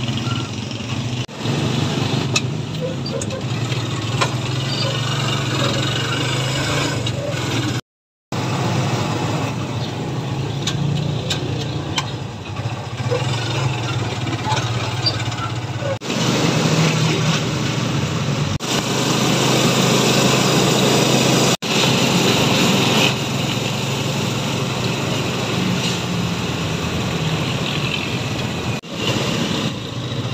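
Motorcycle engine of a tricycle running steadily under way, heard from inside the sidecar with road and traffic noise, swelling for a few seconds past the middle. The sound drops out completely for a moment about eight seconds in.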